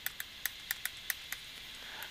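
Light, irregular clicks of a stylus tip tapping a tablet screen during handwriting, about eight in two seconds, over a faint steady hiss.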